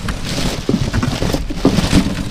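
Plastic bags, bubble wrap and cardboard boxes crinkling and rustling as a gloved hand digs through them, with a few dull knocks as boxes and a plastic board shift.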